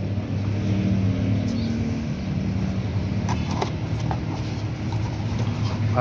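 A motor vehicle's engine running steadily with a low hum, with a couple of light knocks about three and a half seconds in.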